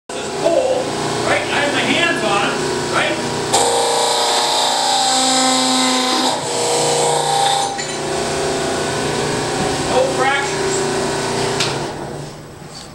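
Hydraulic press running with a steady motor-and-pump hum, swelling to a louder, higher whine for about three seconds in the middle, with people talking over it.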